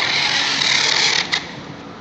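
Packing tape being run off a handheld tape dispenser onto a cardboard carton: a loud rasping screech lasting just over a second, then a short sharp snap.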